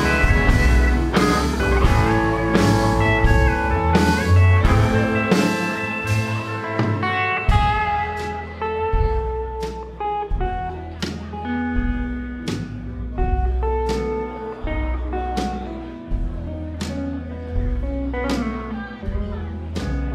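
Country band playing an instrumental break with no singing: electric guitar, pedal steel guitar, upright bass and drums. The playing is dense with steady cymbal strokes for the first several seconds, then thins out to sparser held notes over the bass and a regular drum beat.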